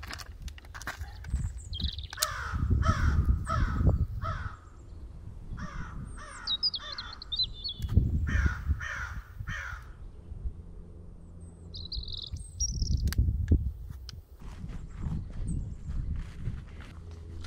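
A crow cawing in three runs of short, falling calls, about nine caws in all, over a low rumble. Small birds chirp high and thin in between.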